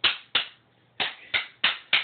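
Two hand-held rhythm sticks struck together loudly, forte: six sharp clacks, about three a second, with a short pause in the middle.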